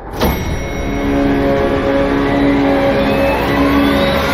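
Trailer sound design. A sudden hit with a falling sweep opens into a loud, swelling drone of held tones. A slow rising whine builds the tension in the second half, before an abrupt cut to silence.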